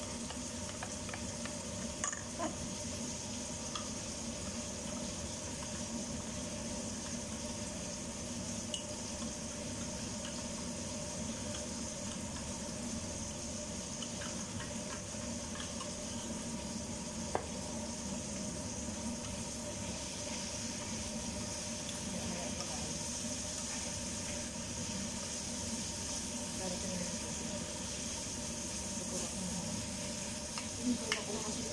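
Steady sizzle of food frying in a pan, with a few light clicks.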